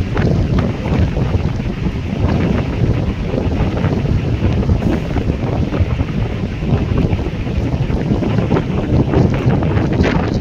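Strong wind buffeting the microphone: a loud, gusty rumble that flutters unevenly throughout.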